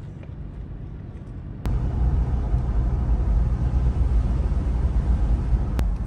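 Steady low rumble of road and engine noise inside a moving car, stepping up abruptly in loudness about a second and a half in.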